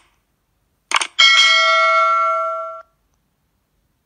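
Subscribe-button sound effect: a quick double mouse click about a second in, then a bright notification-bell ding that rings for about a second and a half before cutting off.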